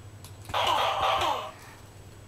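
A breathy vocal sound with a falling pitch, starting about half a second in and lasting about a second.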